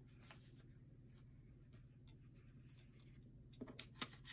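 Near silence: room tone with a steady low hum, then a few faint paper rustles and taps near the end as sticker sheets are handled.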